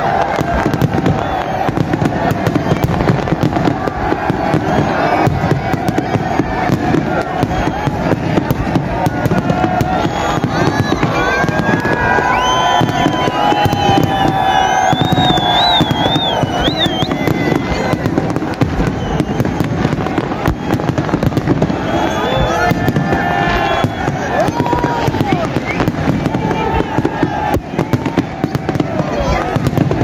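Aerial fireworks display going off in a continuous, rapid string of bangs and crackles, with the chatter and shouts of a large crowd underneath.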